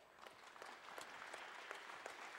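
Audience applauding, starting faint and growing louder.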